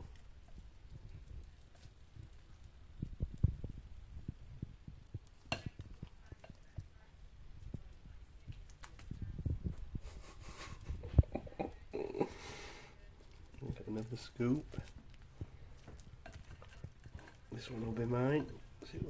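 Metal spoon scooping cottage pie out of a ceramic baking dish and onto a plate: soft knocks and handling bumps, a sharp tap about five seconds in, and a stretch of scraping a little past halfway.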